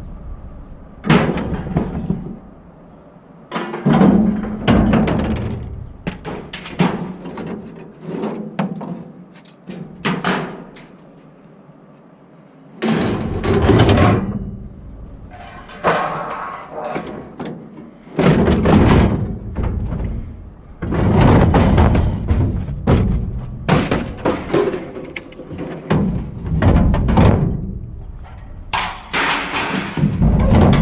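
Scrap metal being thrown from a truck bed onto a scrap pile: a string of loud metal clanks and crashes with ringing tails, quieter for a few seconds about a third of the way in, then coming thick and fast in the second half.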